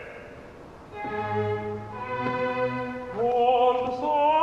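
Live opera music: the orchestra, strings prominent, plays soft held chords that swell about a second in and change once. A solo voice enters with wide vibrato near the end and grows loud.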